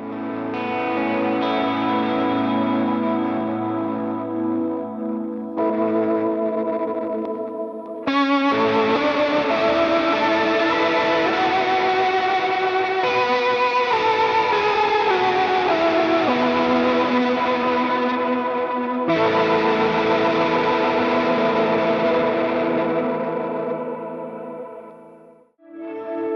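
Electric guitar played through Strymon pedals, with the Mobius switched on for a VB-2-style vibrato, plus delay and reverb. Sustained chords ring and change every few seconds, a run of notes steps downward midway, and the sound fades away near the end.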